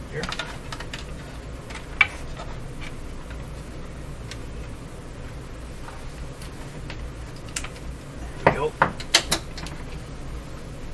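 Handling noise from connecting a test lead and working test equipment: one sharp click about two seconds in and a quick cluster of clicks and knocks near the end, over a steady low hum.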